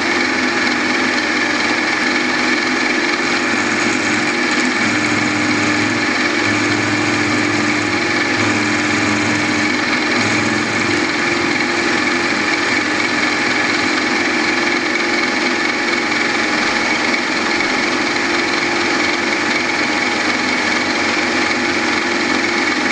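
Machine spindle running steadily with a constant whine, driving a homemade hardened drill-rod cutter as the helical fixture feeds a small 12L14 leaded-steel gear blank up through it and back to cut one tooth.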